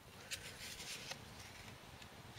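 Faint rustle of a paper album page being turned by hand, with a few soft ticks of paper in the first second.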